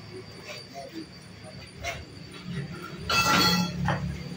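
Small horizontal single-cylinder diesel engine running steadily, belt-driving a palm loose-fruit separator, as a low even rumble. About three seconds in, a loud rush of noise lasts under a second.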